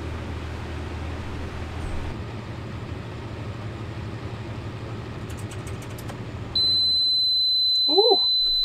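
An electric fan and a heat gun running as a steady load, cutting out about six and a half seconds in. A loud, continuous high-pitched alarm beep starts at that moment: a low-battery cutoff alarm, sounding as the used Valence battery runs flat at the end of its capacity test.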